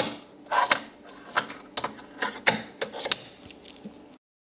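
A run of irregular clicks and knocks, about a dozen in four seconds, from hard objects being handled close to the microphone, over a faint steady hum.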